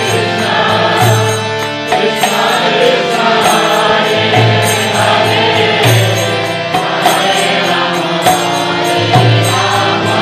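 Harmonium played in a devotional kirtan, its sustained reed chords shifting between notes, with chanted singing over it and a recurring high clicking beat.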